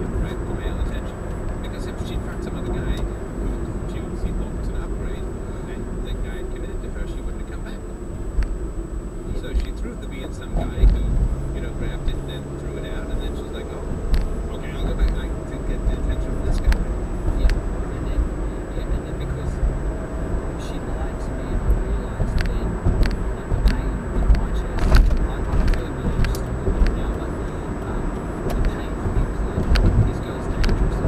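Road and engine noise heard from inside a moving car: a steady low rumble of tyres on asphalt, with scattered light clicks and knocks.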